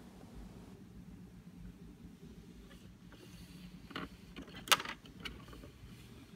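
Toy merry-go-round's small motor humming faintly and steadily as it turns, with a light click about four seconds in and a sharper click soon after.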